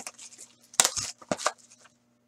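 Clear plastic wrapping being torn and crumpled by hand off a trading-card box, with a handful of sharp crackles in the second half.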